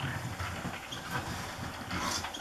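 Great reed warbler singing: a run of rapid, scratchy notes, over a low rumble.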